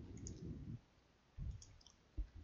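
Faint clicks of a computer mouse, with a short low thump about a second and a half in.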